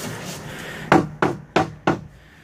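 A 3/4-inch tongue-and-groove plywood subfloor panel is knocked four times in quick succession, about three knocks a second, seating its tongue into the groove of the neighbouring sheet.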